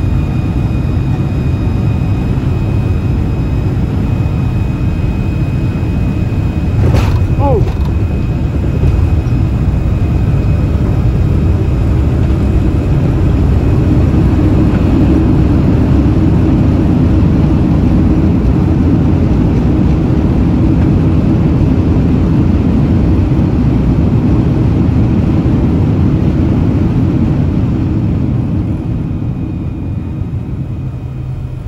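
Cabin noise of a Boeing 767-300ER's Pratt & Whitney PW4060 engines through landing. The main gear touches down with a single thump about a quarter of the way in, followed by a brief falling squeal. The roar then builds and holds through the rollout, as with reverse thrust, and eases off near the end as the jet slows.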